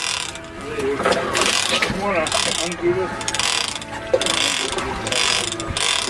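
Big-game fishing reel's clicker ratcheting in repeated surges as a hooked mako shark pulls line off the reel.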